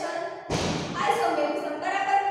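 A woman lecturing, her speech broken about half a second in by a single loud thump.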